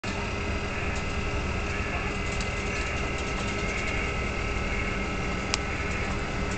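Steady drone of a fishing vessel's engine, a constant hum under the rush of wind and a stormy sea. A single sharp click comes about five and a half seconds in.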